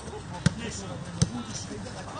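A football kicked twice: two sharp thuds about three-quarters of a second apart, over faint voices.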